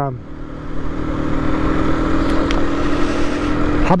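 Aprilia RS 125's single-cylinder four-stroke engine running at a steady road speed, a steady drone with wind rushing on the microphone.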